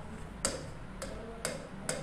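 Stylus tip tapping and clicking against the screen of an interactive whiteboard while writing: four short sharp clicks, about half a second apart.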